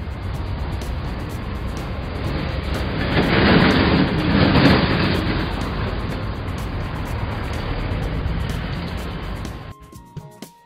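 A steady rushing, rumbling noise effect that swells in the middle and cuts off suddenly near the end, over background music with a light beat.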